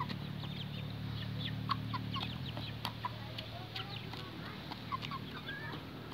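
Domestic hens clucking softly as they peck grain from a plastic bowl, with many quick, sharp taps of beaks on the bowl.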